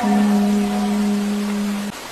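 A voice holding one steady low note, the drawn-out last syllable of a chanted Arabic supplication, which stops just before the end. A steady hiss lies underneath.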